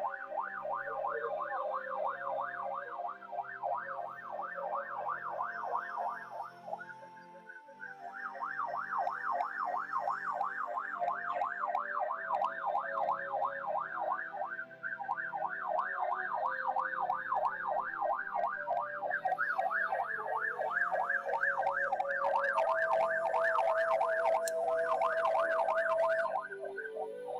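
Background music with a bass line, over which a siren-like tone warbles rapidly up and down about four times a second. It dips briefly about seven seconds in.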